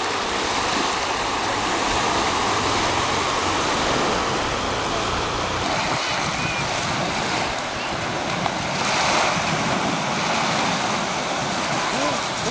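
Small sea waves breaking and washing up on a sandy beach: a steady, continuous rush of surf.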